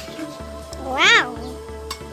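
A cat meows once, a single rising-then-falling call about a second in, over background music. A short metal clink, like a ladle against the wok, comes near the end.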